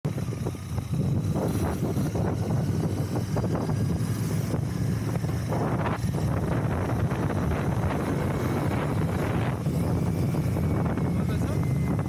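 Royal Enfield Continental GT 650's parallel-twin engine running steadily while the motorcycle is ridden, with wind rushing over the microphone.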